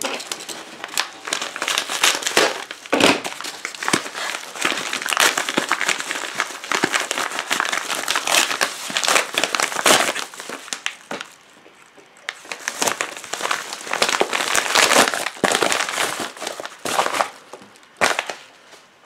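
Hands tearing open and crinkling a yellow padded paper mailer, a dense run of crackling and ripping with a brief quieter pause about two-thirds of the way through.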